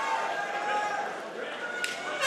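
Indistinct crowd murmur and voices in an indoor arena, with a brief sharp click near the end.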